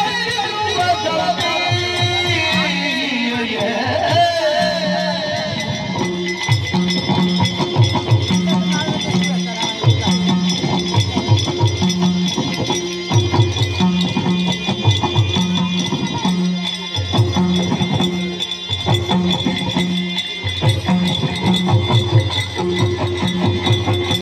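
Live Yakshagana ensemble music: a wavering, gliding vocal melody in the first few seconds, then drums and small hand cymbals keep a steady, repeating rhythmic cycle over a continuous drone.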